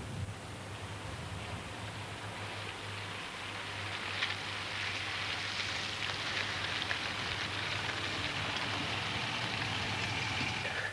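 Faint, steady road and engine noise of a car on the move, a hiss over a low hum that grows a little louder about four seconds in.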